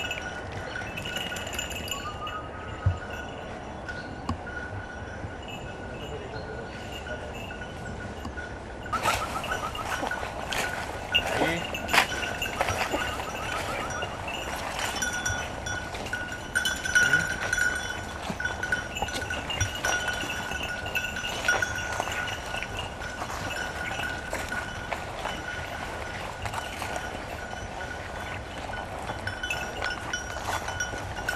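A small bell on a hunting dog's collar jingles continuously as the dog works the cover. From about nine seconds in, rustling and crackling through brush and leaf litter joins it, with a few sharp snaps.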